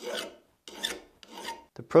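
An 8-inch mill bastard file rasping across the hardened steel ball-peen hammer head, three short strokes about half a second apart.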